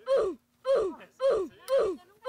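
A man's short, repeated gasping cries, about two a second, each falling in pitch, from cold shock: his bare feet are numb after a plunge into near-freezing seawater.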